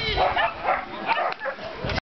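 A dog barking in a rapid string of short, high yips, several a second.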